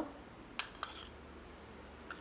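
Two light clicks of a metal spoon against a small bowl, about a quarter second apart, the second briefly ringing, as coffee powder is spooned onto sugar.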